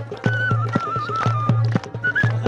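Ney flute playing a stepping melody over a frame drum and hand-clapping keeping a steady beat of about four strokes a second.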